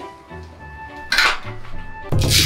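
Metal plates of an adjustable dumbbell clattering as it is set down in its cradle, once, about a second in, over background music.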